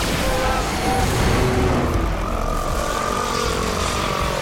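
Film sound effect of a surge of electricity: a sudden burst of crackling discharge, then a dense, steady rush of electrical noise with a low rumble underneath.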